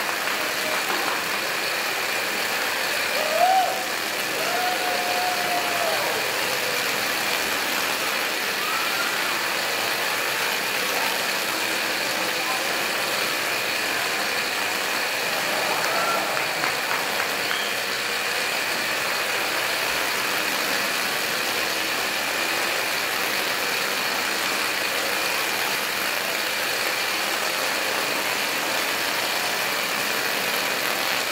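Tesla coil running continuously with a performer on its top, its sparks making a steady buzzing hiss that does not let up.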